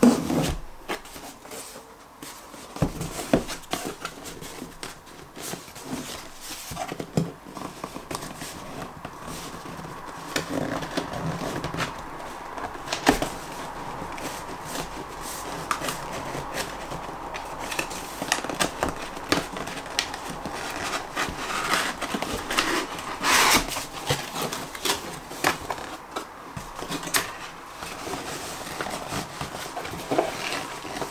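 Cardboard graphics-card box being handled and opened by hand: scattered scrapes, taps and rubbing of cardboard, with louder knocks about 13 and 23 seconds in.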